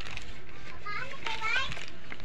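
Faint, high-pitched children's voices in the background for about a second, midway through, over steady low room noise.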